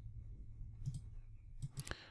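A few faint computer clicks, about a second in and again near the end, over a low steady hum.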